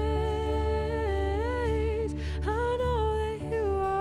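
Slow worship song: a woman's voice carries the melody in long held notes with small rises and falls, over a steady low sustained accompaniment.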